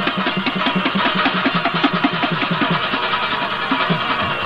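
Instrumental passage of Pashto folk music: a plucked string instrument playing a fast run of short, separate notes.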